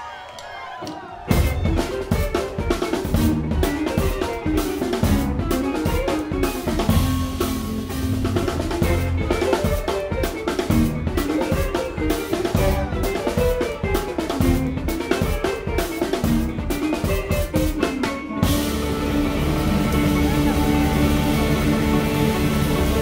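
A live band with electric guitar, bass and drum kit playing an instrumental passage. The drums come in hard about a second in with a busy beat under a winding bass and guitar line. Near the end the busy drumming stops and the band holds sustained, ringing chords.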